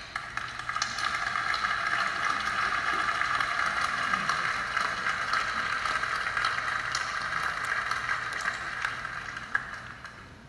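Audience applauding, a steady dense clapping that tapers off near the end.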